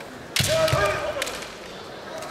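A sudden kendo exchange about a third of a second in: bamboo shinai cracking together and on armour several times in under a second, with a thud at the onset and a kendoka's sustained kiai shout held on one pitch, fading out by about a second and a half.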